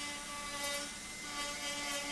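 A dental handpiece's rotary bur running steadily with a continuous whine as it grinds acrylic, shaping the emergence profile of a provisional crown on its abutment.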